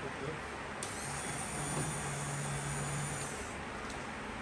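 Hand-held flavour mixer blender running in a jug of blueberry soft-serve mix: a steady motor hum with a high whine that stops about three and a half seconds in.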